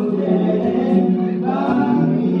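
Male voices singing a nasheed together into stage microphones, unaccompanied, on long held notes.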